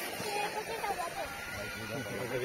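People talking in the background, with a faint steady whine from a 1/10-scale RC rock crawler's electric drive as it crawls up a rock slab.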